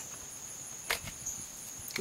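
Crickets chirping in a steady high-pitched trill, with a single sharp click about a second in.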